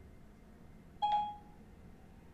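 iPhone Siri's short electronic chime, a single beep about a second in, signalling that Siri has stopped listening and is processing the spoken question.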